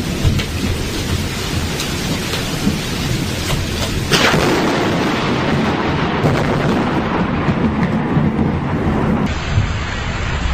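Thunderstorm with rain falling steadily and thunder rumbling. About four seconds in, a sharp crack of close thunder breaks out and is followed by a louder rolling rumble.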